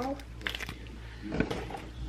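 Sealed plastic lid being peeled off a fruit jelly cup, giving faint crinkling and a few short crackles about half a second and a second and a half in.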